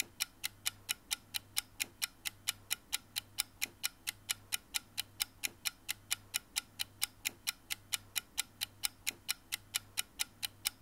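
Steady, even ticking like a clock, about four to five ticks a second, over a faint low hum.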